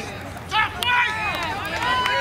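Several voices shouting and calling out across a lacrosse field during live play, high-pitched and overlapping, with two sharp clicks a little after half a second in.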